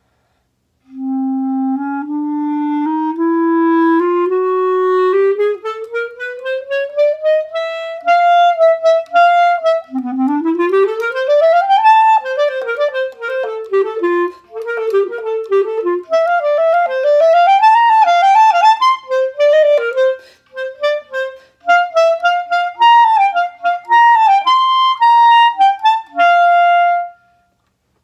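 Solo B-flat clarinet: a slow rising line of held notes, then a fast upward run and a passage of quick notes leaping up and down, closing on one held note near the end.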